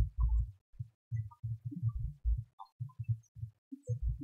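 Microphone handling noise: irregular low thumps and bumps, several a second, as a microphone is moved and fitted.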